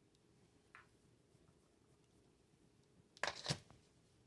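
Mostly quiet, with a faint tick under a second in, then two sharp knocks of billiard balls about a quarter of a second apart near the end.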